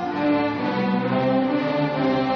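A string orchestra playing, with cellos and double bass among the bowed strings, holding long notes that shift every half second or so.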